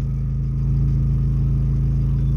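Car engine idling steadily, heard from inside the cabin, a little louder from about half a second in.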